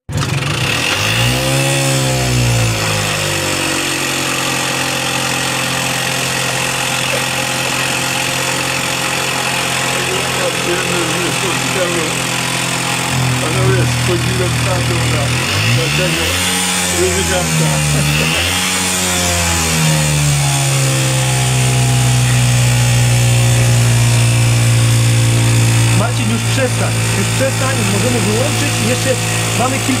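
A compressed-air-powered Motorynka moped prototype's motor running. It is revved up and down about two seconds in and twice more in the middle, then holds a steady speed through the second half.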